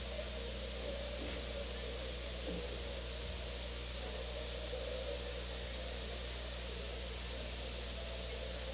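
Steady room tone: a constant low hum under an even hiss, with no ball strikes or other sudden sounds.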